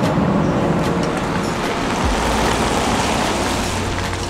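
Loud, steady running noise of a passing vehicle, without any distinct events.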